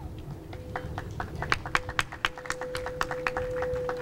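Scattered handclaps from a small group: a few people clapping unevenly for about three seconds, with a faint steady tone underneath.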